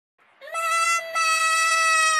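A high-pitched, drawn-out voice-like cry held on one steady note, starting about half a second in, with a brief break near the one-second mark.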